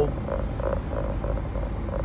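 A steady low rumble inside a car, with a faint tone that pulses about four times a second.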